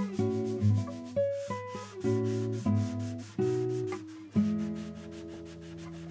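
Classical guitar playing a melody, with quick repeated rasping strokes of hand sanding on a guitar's wooden body beneath it. A held chord rings out from a little past halfway.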